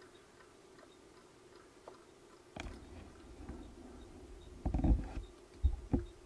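Handling noise: low rumbling and a few soft thumps from about two and a half seconds in, loudest near the end, as a hand moves over and covers a small solar-powered dancing pumpkin toy on the bench.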